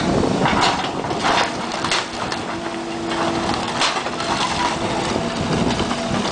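Excavator bucket crushing and dragging demolition debris, with repeated cracks and crunches of splintering wood over the machine's running engine. A steady hum comes in about halfway through.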